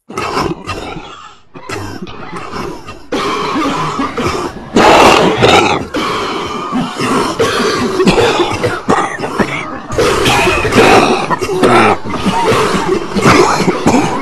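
A person coughing and spluttering loudly and repeatedly. The stretches break off and restart abruptly, as if cut together.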